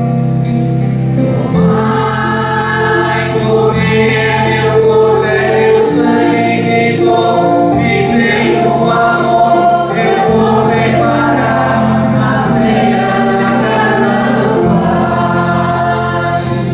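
A church hymn sung by voices over a Yamaha electronic keyboard, which plays sustained bass chords changing every couple of seconds and a steady rhythm-pattern beat.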